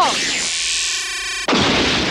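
Cartoon sci-fi sound effects: a synthesized electronic power-up tone with a falling sweep, cut off suddenly about a second and a half in by a loud blast and crash of shattering debris.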